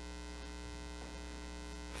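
Steady electrical mains hum, a low buzz with many overtones, holding unchanged throughout.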